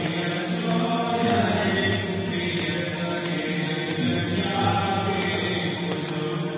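Devotional chanting sung as music, a steady unbroken chant with sustained held notes.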